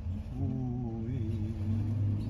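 Bus engine idling, a steady low hum, heard from inside the bus. Over it, a long wavering vocal sound lasts about a second and a half.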